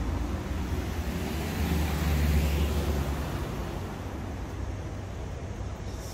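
Road traffic on the street alongside, with a vehicle passing: its engine rumble swells to a peak about two seconds in, then fades to a steadier traffic hum.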